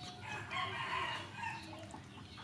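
A high-pitched animal call, wavering, lasting about a second.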